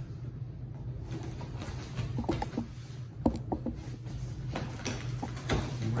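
Cardboard shipping box being handled and its flaps pulled open: scattered scrapes, clicks and light knocks of cardboard, over a steady low hum.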